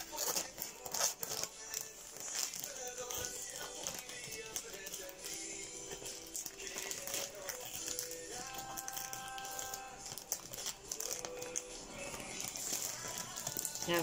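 Clear plastic bag crinkling and rustling in irregular bursts as a zippered fabric accessory case is handled and slid into it, over faint background music.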